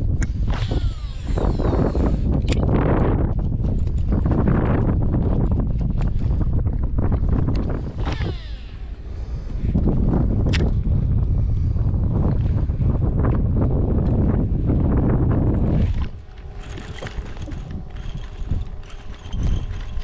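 Wind buffeting the microphone on open water, a loud low rumble with a few sharp clicks. About sixteen seconds in the wind drops and a steady mechanical whine of several tones comes through.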